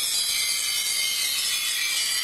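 Steady, bright high-pitched shimmering hiss of a title-sequence sound effect, with almost nothing in the low range.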